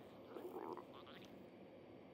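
Human stomach gurgling after a meal: one short, bubbly gurgle with a few rising squeaks, starting about a third of a second in and lasting under a second.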